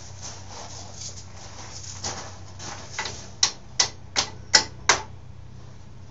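Metal hand tools striking and clicking against a Yamaha YZ80 dirt bike's engine during disassembly: five sharp metallic clicks, about three a second, some ringing briefly, over a steady low hum.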